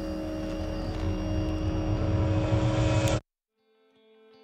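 A steady low rumble under a held musical drone, swelling louder and then cutting off suddenly about three seconds in.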